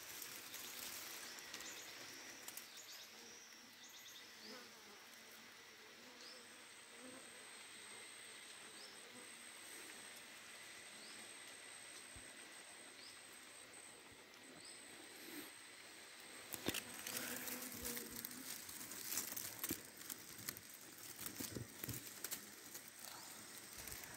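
Faint buzzing of a few wild honeybees flying in and out of their nest entrance, over a high, steady insect trill and short chirps about once a second. From about two-thirds of the way through come rustling and light knocks of movement in dry leaves and brush.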